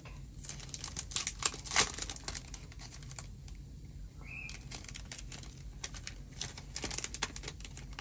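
Clear plastic die-set packaging crinkling and crackling as it is handled and pulled at to get it open, in a run of irregular sharp crackles, loudest about two seconds in.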